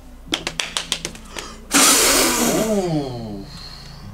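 A quick run of about ten sharp knocks, then a loud rushing burst and a long voice-like sound sliding down in pitch.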